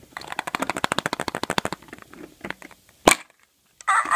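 Plastic surprise-egg capsule being handled and opened: a rapid run of small plastic clicks for the first couple of seconds, a few scattered clicks, then one loud sharp snap about three seconds in as the capsule pops apart.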